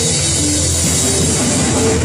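Rock band playing live and loud, with electric guitars, electric bass and drum kit.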